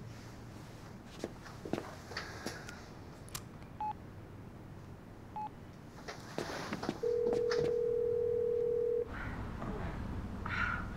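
A mobile phone placing a call: two short single beeps from the phone, then one steady ringback tone lasting about two seconds, which cuts off suddenly. Faint clicks and rustling of handling come before it.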